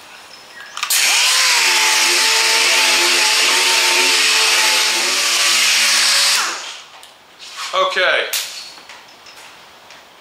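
Air-powered dual-action orbital sander wet-sanding clear coat with 4,000-grit paper. It starts about a second in with a high whine and a hiss of air, runs steadily for about five and a half seconds, then winds down and stops.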